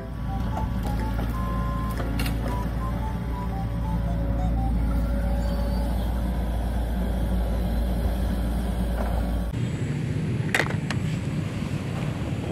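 Diesel engine of a Volvo wheeled excavator running steadily as its log grapple works, a low even rumble that cuts off suddenly near the end.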